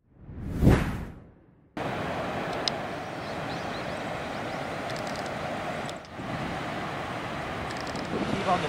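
A single whoosh that swells to a peak and fades away within the first two seconds, then, starting abruptly, the steady noise of large ocean waves breaking, with a brief dip about six seconds in.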